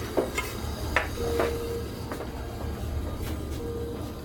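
A few light clinks and knocks of a stainless-steel kettle being carried and handled, over a steady low hum.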